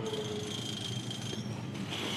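Supercar V8 race-car engine noise in the pit lane during pit stops. A pitched engine note fades out about half a second in, leaving a steady high whine over mechanical background noise.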